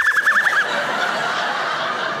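A high, quickly wavering squeal of a vocal sound effect from the comedian, which ends about half a second in. A studio audience laughs through the rest.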